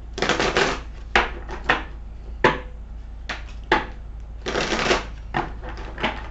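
A deck of tarot cards being shuffled by hand: a run of short, irregular card riffles and taps, with a longer riffle about four and a half seconds in.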